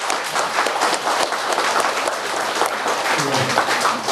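A roomful of people applauding, a dense patter of many hands clapping that thins out near the end.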